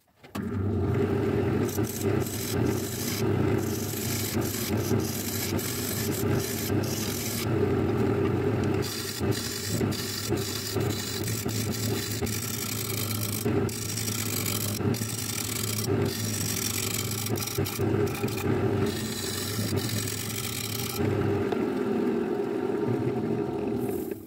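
A wood lathe motor starts and runs with a steady hum while a turning tool cuts the face of a spinning glued-up ash, mahogany and walnut disc, giving an uneven scraping hiss with many short strokes. The lathe cuts off at the very end.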